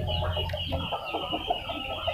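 Short, repeated clucking bird calls in the background over a steady high hiss, with a low hum underneath that fades out about a second in.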